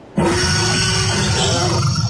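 Dinosaur roar sound effect: a loud, low roar that starts suddenly just after the beginning and is held steady.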